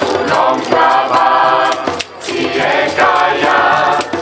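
Gospel choir singing a chanted song in several voices, in two phrases with a short break about two seconds in, with a hand drum beating along.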